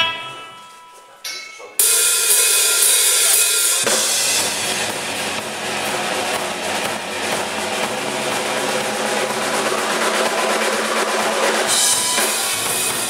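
Rock band playing live. A ringing chord fades, there is a second short hit, and then the full band crashes in with drums and cymbals about two seconds in. The low end fills in heavily around four seconds in and the band plays on loudly.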